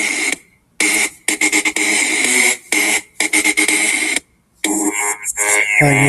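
Instrumental backing track of an electronic pop song playing its intro: loud, noisy synth sound with a steady high tone, chopped into blocks with short silent breaks. A singing voice comes in at the very end.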